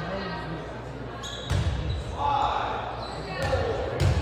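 Dodgeballs hitting in a large echoing gym: a thud about a second and a half in and more near the end, amid players' voices.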